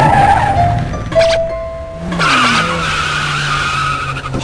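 Music track with a car tyre screeching over it from about halfway through: a sustained wavering squeal laid over the beat.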